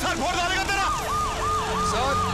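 Emergency-vehicle siren wailing rapidly up and down in a fast yelp, about three cycles a second. It comes in under a second in, over voices at the start.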